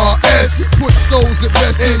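Hip hop track: rapping over a deep, sustained bass line and a drum beat.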